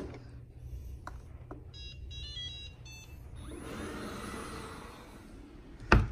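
Shark ION robot vacuum playing a quick run of electronic beeps at several pitches while it is caught up on the sliding-door ledge. A couple of seconds of soft rushing noise follow, and a sharp knock comes near the end.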